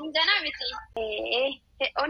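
Speech only: a woman talking in short phrases with brief pauses.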